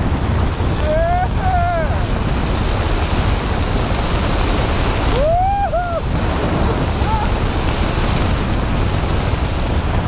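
Steady wind buffeting the camera's microphone during parachute canopy flight. A voice gives two short rising-and-falling calls, about a second in and again about five seconds in.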